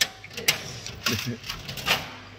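Handling noise on a handheld phone: three sharp knocks, two close together at the start and one near the end, with rustling between them and a faint voice briefly in the middle.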